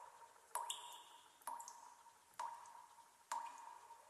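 Recorded water-drop plinks in the dance's music track, one about every second in a steady rhythm, each a sharp drip with a short ringing note that fades before the next.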